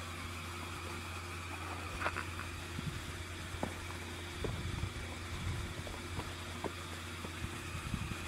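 Steady low engine hum with a few faint clicks over it.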